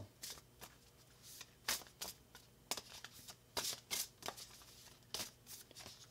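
A tarot deck being shuffled overhand by hand: a faint, irregular string of soft flicks and slaps of card against card.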